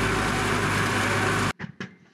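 Steady mechanical running noise with a low hum from a truck-mounted Pantsir air-defence vehicle, cutting off abruptly about one and a half seconds in.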